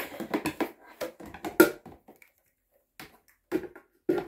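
Plastic knocks and clatter from the black plastic top unit of a Boxio Wash portable sink being lifted and handled against its box: a quick run of knocks at first, then a pause and a few more near the end.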